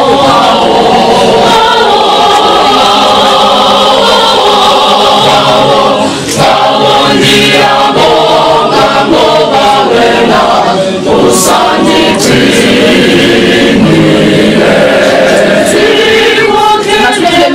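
Background music: a choir singing a gospel song, loud and continuous.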